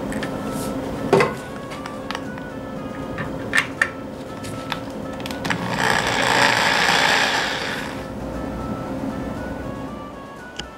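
A cordless drill boring into a broken, rusted steel bolt for about two seconds in the middle, cutting a pilot hole for a screw extractor, over background music, with a few sharp clicks of tool handling before it.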